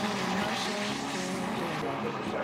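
Steady sizzling hiss of a papad frying in hot oil in a small metal kadai, under faint background music.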